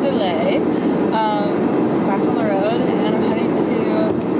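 Steady road and engine rumble inside a moving car's cabin, with a voice singing short gliding notes over it.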